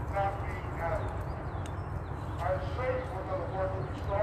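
Faint voice of a rally speaker, carried over a loudspeaker and spread-out outdoor crowd, heard in two stretches, briefly at the start and again from about halfway in. A steady low rumble of wind on the microphone runs under it.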